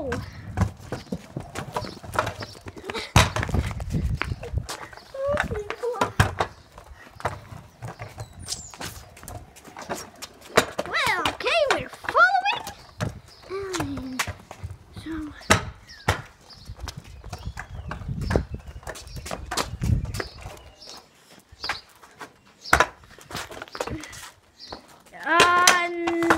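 Kick scooter wheels rolling over paving slabs: a low rumble broken by frequent clicks and knocks, dying away about five seconds before the end. A child's voice calls out briefly in between.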